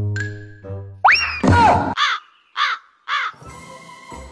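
Plucked-string cartoon music ends about a second in, then a loud cartoon creature call with a falling squeal, followed by three short, evenly spaced squawks that drop in pitch.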